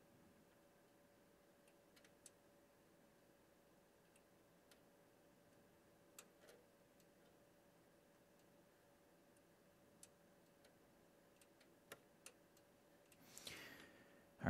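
Near silence: room tone with a faint steady hum, a few faint scattered clicks, and a short rustle near the end.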